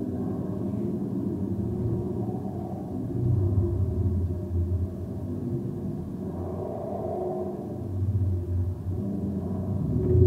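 A low, droning rumble with sustained deep tones from the soundtrack of a projected video artwork playing in the hall. It grows louder about three seconds in and again near the end.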